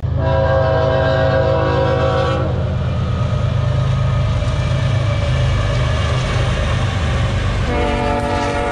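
Freight train's diesel locomotives running with a steady low rumble while the air horn sounds a long chord blast of a couple of seconds, then starts again near the end.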